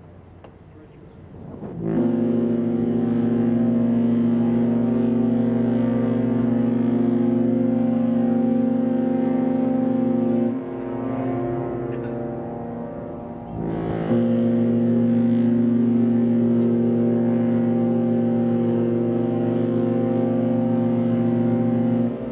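Queen Mary 2's ship's horn sounding two long, deep blasts: the first starts about two seconds in and lasts about eight seconds, and the second starts about fourteen seconds in and is still going at the end. These are the liner's departure blasts as she sails.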